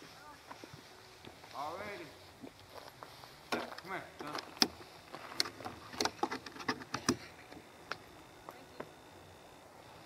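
Faint, low voices of people talking quietly off-mic, with scattered sharp clicks and taps in the middle seconds.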